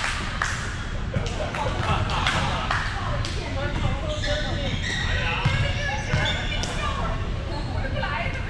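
Repeated thuds of balls being hit and bouncing on a hardwood gym floor, echoing in a large hall. Several people's indistinct voices call and chatter, most in the middle of the stretch.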